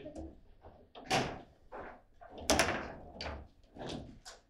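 Table football play: a series of hard knocks as the plastic figures strike the ball and the rods bang against the table, the two loudest about a second and two and a half seconds in.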